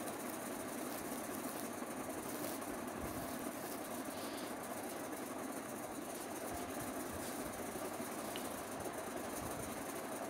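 Steady mechanical hum and rush of machine noise in a small room, even in level throughout.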